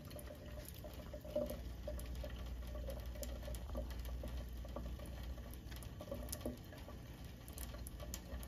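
Cat lapping from a thin stream of kitchen faucet water, small irregular tongue clicks over the faint steady trickle of the water into the sink.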